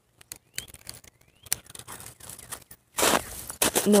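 Handling noise from a phone held against a padded nylon jacket: scattered small clicks and rubs, then a louder rustle of fabric about three seconds in.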